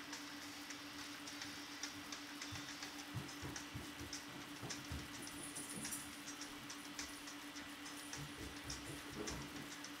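Faint crackling and fizzing of sugar charring in concentrated sulfuric acid in a glass beaker as it gives off steam, heard as a soft hiss with many small scattered ticks and a few soft low thuds, over a steady low hum.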